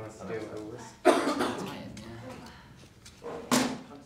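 People talking, with two sudden louder bursts, one about a second in and one near the end.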